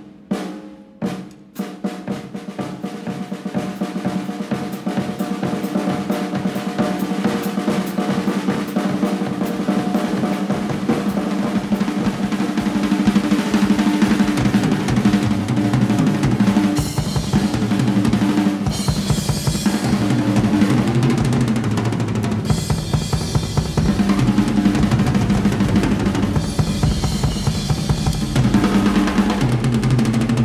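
Drum solo on a large drum kit. Separate tom strokes at the start quicken into fast, continuous rolls around the toms and bass drum, growing louder. Cymbal crashes break in several times in the second half.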